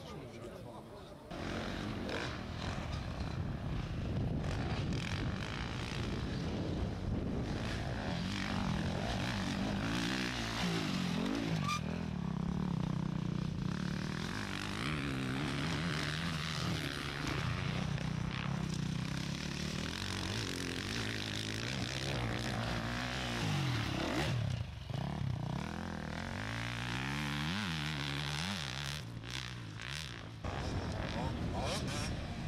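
Enduro motorcycle engines revving hard, the pitch rising and falling over and over as the throttle is worked under load on a climb. It comes in loudly about a second in.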